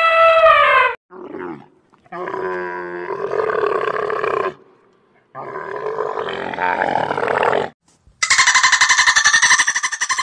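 An elephant's trumpet call, falling in pitch as it ends about a second in. Then a camel's rough, grunting roars come in two stretches of a few seconds each. Near the end a dolphin's rapid pulsed chattering begins, with about ten pulses a second.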